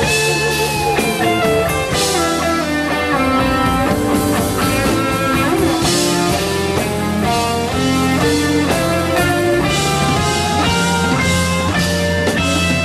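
A live rock band playing an instrumental passage: an electric guitar lead line of quick notes, with some bent notes, over bass and drum kit.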